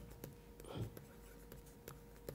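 Pen stylus writing on a tablet screen: a few faint taps and scratches as characters are written.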